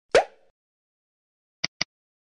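Edited-in end-card sound effects: a short rising pop just after the start, then two quick mouse clicks close together near the end.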